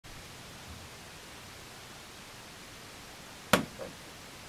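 Steady faint hiss, broken about three and a half seconds in by one sharp click and a softer knock just after it, as power is connected and the 12 V LED module lights up.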